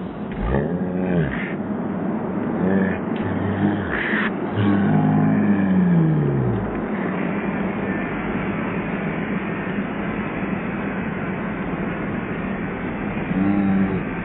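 Ice hockey arena audio slowed far down along with the picture: deep, drawn-out, sliding voices through the first half. After about seven seconds these give way to a steady, low roar of the crowd cheering a goal.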